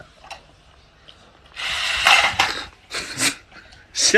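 A toy bulldog food bowl going off with two short noisy bursts, one about a second and a half in and a shorter one near the three-second mark. It startles the golden retriever eating from it.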